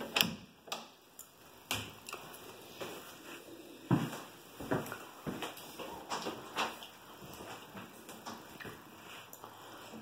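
Footsteps and phone handling noise in a small room: scattered light knocks and clicks, the sharpest about four seconds in.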